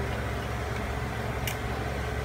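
Pork spare ribs reducing in a thick red-wine and soy sauce over high heat: the sauce bubbling in the pot over a steady low hum, with one small click about one and a half seconds in.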